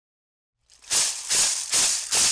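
A shaker or rattle struck in a steady beat, three strokes about half a second apart, starting after a short silence.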